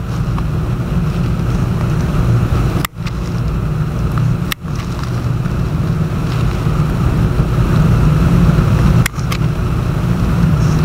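Steady low rumble of background noise, cut by three sudden brief dropouts a few seconds apart.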